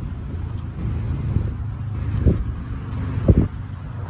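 Steady low rumble of road traffic, with wind buffeting the microphone. Two short low thumps come about two and three seconds in, the second the louder.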